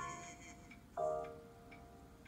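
Grand piano playing slow chords through a tablet's speaker: a chord rings on and fades, and another is struck about a second in and fades away.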